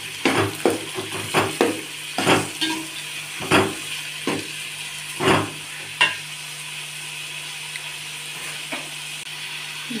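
Chopped onions and green chillies sizzling in oil in a metal pot while a metal slotted spatula stirs them, scraping and clacking against the pot about a dozen times over the first six seconds. After that only the steady sizzle of the frying goes on.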